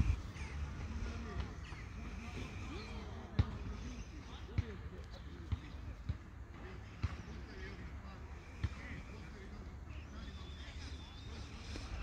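Outdoor ambience of distant voices, wind rumbling on the microphone, and a handful of sharp thuds about a second apart in the middle of the stretch.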